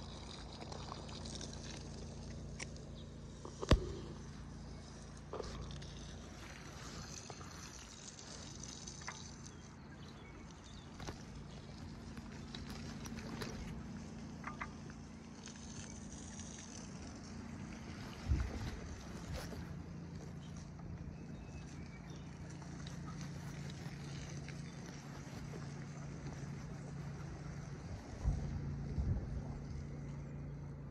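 Muffled handling noise from a covered phone microphone: rubbing and three sharp knocks, the loudest about four seconds in, over a steady low hum.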